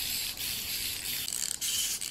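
Small clockwork wind-up toys being wound by their keys: a fast, steady, fine ratcheting rasp of the spring mechanisms.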